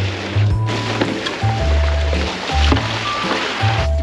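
Background music with a deep bass line, over water pouring from a jug into a rubber tub.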